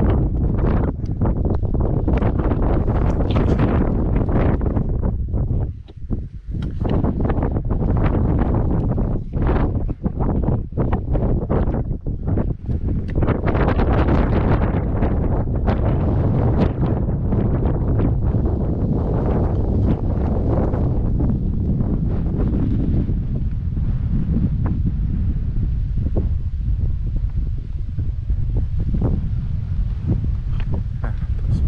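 Wind buffeting the camera's microphone in gusts: a loud, low, uneven noise that drops away briefly about six seconds in and again a few times a little later.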